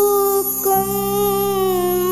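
A young girl singing long held notes that glide slightly in pitch, over a steady keyboard accompaniment.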